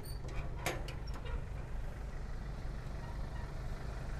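A vehicle engine idling nearby as a steady low hum, with a few light clicks in the first second or so.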